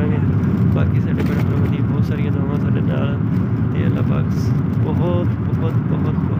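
Cabin noise of a car on the move: a steady low rumble of road and engine noise throughout. Voices talk over it at several points.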